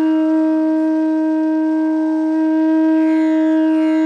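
Background music: a wind instrument holds one long, steady note.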